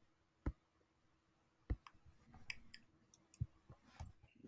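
Faint, sparse clicks of a computer mouse: three sharper clicks spaced a second or more apart, with a few lighter ticks between them.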